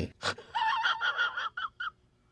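High-pitched, wheezing laughter in a run of short gasping bursts that stops shortly before the end.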